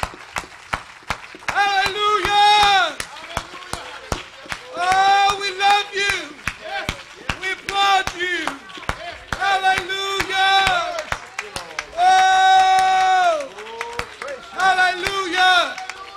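Congregation clapping their hands in a steady rhythm while a voice sings drawn-out phrases over the claps, holding one long note about twelve seconds in.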